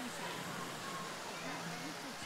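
Steady hiss of water spraying from a poolside shower jet, with faint voices in the background.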